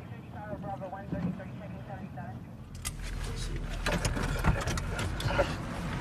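Inside a police car: the engine runs low beneath faint, muffled voices. A little before three seconds in, a louder rush of outside noise comes in, with a few sharp clicks and knocks like a car door and handling.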